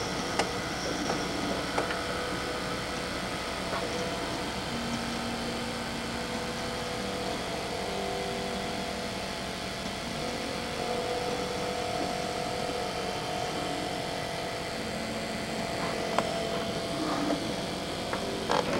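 Hurricane-force wind and rain rushing steadily, with faint wavering whistling tones and a few small knocks.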